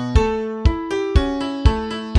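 Instrumental song intro: a piano-like keyboard playing chords, struck about twice a second, each chord fading before the next, over a low bass line.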